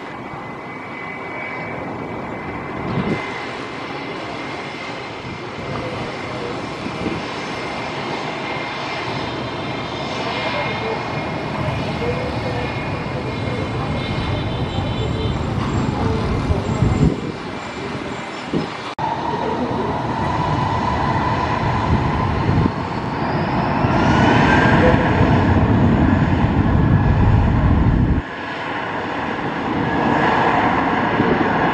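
Airbus A320's IAE V2500 turbofan engines running as the airliner moves onto the runway, then spooling up for takeoff: a rising whine and the engine noise getting louder about three-quarters of the way in. The sound jumps abruptly twice where the footage is cut.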